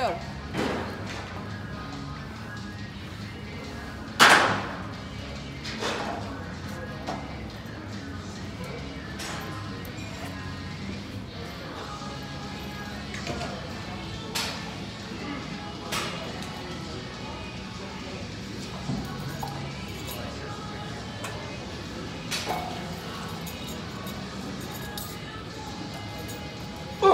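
Weight-room ambience with background music and voices. A sharp clank of metal weights comes about four seconds in, followed by several fainter knocks and clinks at irregular intervals.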